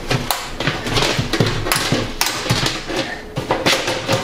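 The thin steel wrap-around cover of a Cooler Master Elite 110 mini-ITX computer case being worked loose and slid off its frame by hand: a run of irregular metal knocks, clicks and scrapes.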